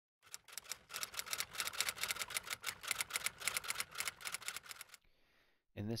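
Rapid typing on keys: a fast, even run of sharp clicks, about ten a second, that stops about five seconds in.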